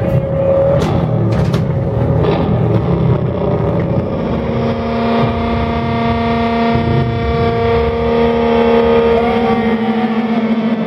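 A live stoner-metal band at club volume: heavily distorted electric guitars and bass with drums. Cymbal crashes come in the first couple of seconds. From about four seconds in, a held guitar chord rings on steadily, with a short rising-and-falling tone near the end.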